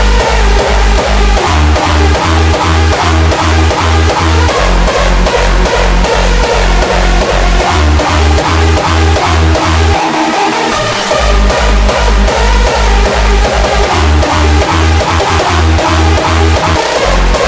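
Hardstyle dance track mixed at 154 BPM: a heavy kick drum on every beat under a synth melody. The kick drops out for about a second around ten seconds in, then comes back.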